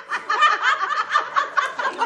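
A group of young women laughing together, several voices overlapping in quick, choppy bursts of giggles and chuckles.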